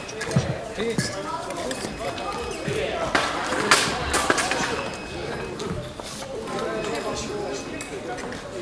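Indistinct voices chattering in a large sports hall, with several sharp knocks and thuds scattered through, the clearest a little past the middle.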